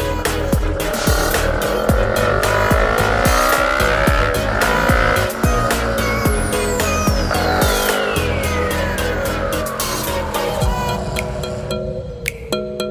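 Background music with a steady beat over a motorcycle engine rising in pitch as it accelerates, then dropping about five seconds in. A long falling sweep runs through the second half.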